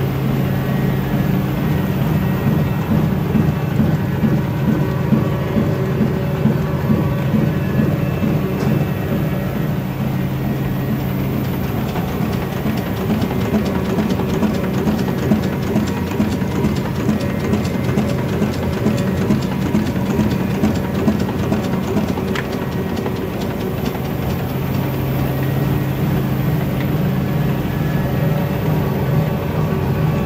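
KBA Rapida 74 four-colour sheetfed offset printing press with coating unit, running: a steady low hum under a rapid, even clatter. The clatter grows thicker and the low hum weaker around the middle.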